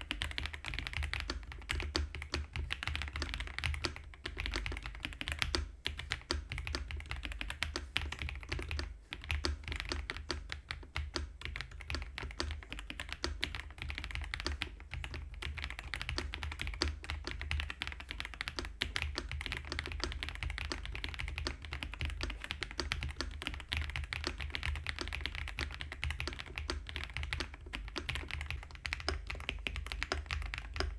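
Continuous fast typing on a mechanical keyboard fitted with Avocado switches on a polycarbonate (PC) plate: a dense, steady stream of key clacks and bottom-outs.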